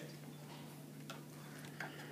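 Low steady hum of the projector, with two light ticks about a second and 1.8 seconds in, as a marker comes down on the overhead projector's transparency to write.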